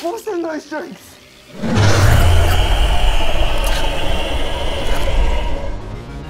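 A brief strained, whimpering voice, then from about two seconds in a loud, long monstrous scream-roar with a deep rumble under a harsh screech, lasting about four seconds: a possessed alien's roar as a film sound effect.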